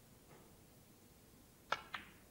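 Snooker cue tip striking the cue ball with a sharp click near the end, followed about a quarter second later by a second, smaller click as the cue ball hits an object ball.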